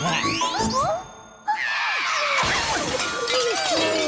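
Cartoon sound effects over music: a short lull, then a sudden loud smash and shatter of breaking pottery about one and a half seconds in.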